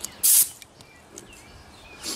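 A short, sharp hiss of compressed air, about a quarter second long, as an air hose's quick-connect coupler is pushed onto the air inlet of a Lematec portable sandblaster gun.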